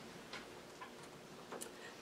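Faint, irregular small clicks, about three in two seconds, over quiet room tone.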